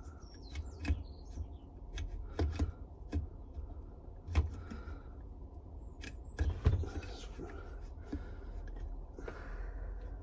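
Irregular light metal clicks and knocks as an intake valve and a Briggs & Stratton valve spring compressor, holding the valve spring fully compressed, are worked into a small Briggs & Stratton engine block. The sharpest knocks come about a second in, about four and a half seconds in and near seven seconds in.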